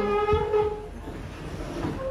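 A large fabric sofa being pushed across a ceramic tile floor, its base scraping and juddering unevenly over the tiles.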